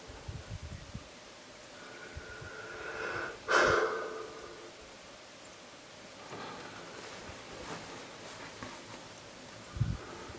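A short, loud burst of breath about three and a half seconds in, after a breathy build-up, with a few soft handling thumps near the start and just before the end.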